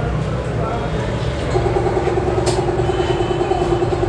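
A steady low motor hum. About one and a half seconds in, a steady, even-pitched drone joins it and holds.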